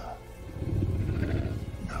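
Deep, rumbling growl of a reptilian movie monster over low film music, between its taunting words.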